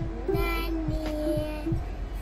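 A young child singing long held notes that step slightly in pitch, over background music with a steady plucked beat.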